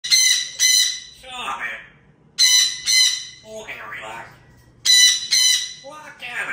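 Parrot squawking and talking. Three times over, a pair of loud, harsh squawks is followed by a lower, word-like call of "squawk".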